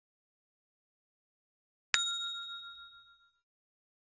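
A single bell ding sound effect for a notification-bell icon, struck once about halfway in and ringing away over about a second and a half.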